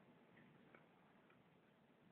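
Near silence: room tone, with one faint click about three quarters of a second in.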